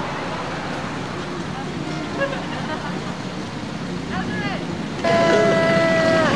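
Street noise with a car going by and faint voices in the background; about five seconds in, a loud, drawn-out shout starts, is held for about a second and trails off downward.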